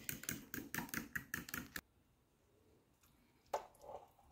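A metal utensil clicking against a glass dish as sour cream and egg yolks are beaten together, about five clicks a second, stopping suddenly a little under two seconds in. A single knock follows near the end.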